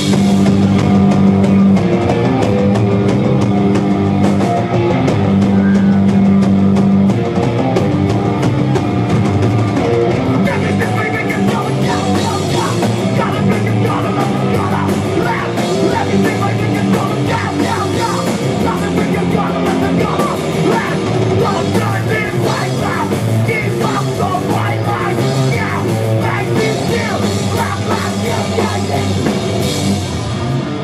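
A rock band playing live, with electric guitars, bass and drum kit and a lead vocalist singing into a microphone. The song opens on long held chords, and the playing turns denser and more driving after about ten seconds.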